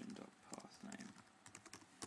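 Faint clicking of computer keyboard keys in short irregular runs of keystrokes as text is typed.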